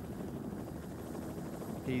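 Steady low rumbling noise of a camera helicopter's rotor and engine, even and unchanging.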